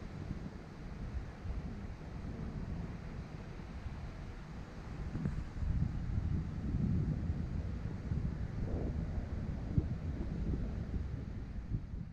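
Wind buffeting the microphone in gusts, a low rumble that grows louder about halfway through.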